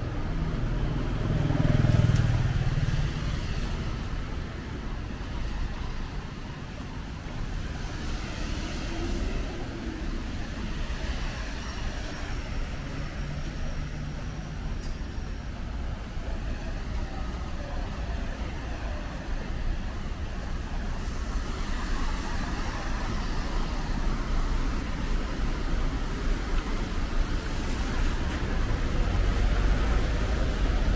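City street traffic noise: a steady hum of passing vehicles, with one vehicle passing close about two seconds in.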